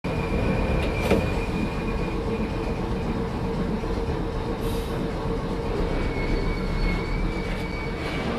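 Vintage electric tram running along its track, a steady low rumble with a thin high whine early on that returns near the end, and a sharp click about a second in.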